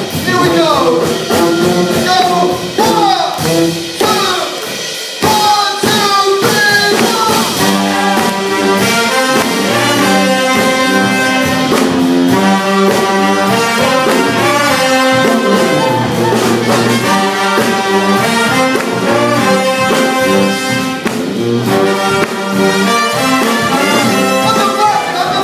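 Live brass band of trumpet, trombone, saxophone and sousaphone with drums, playing loudly. Sliding notes fill the first few seconds, then after a brief dip the whole band comes in together about five seconds in, with held chords over a steady beat.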